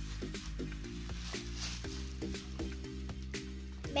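Background music with soft, steadily held notes, with faint rustling and handling clicks of tissue-paper packing being pulled from a pencil case over it.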